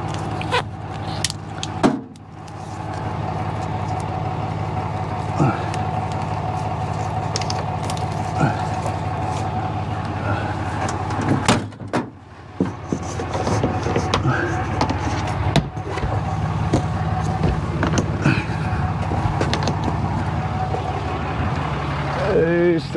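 Truck engine idling steadily, with a few clicks and knocks from handling around the fifth-wheel hitch.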